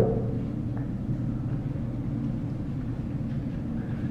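Steady low rumble of room tone in the hall, picked up by the speaker's open microphone during a pause in the talk.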